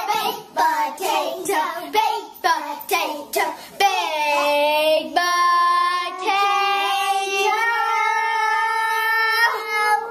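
A child singing: short sung syllables for about four seconds, then long drawn-out held notes.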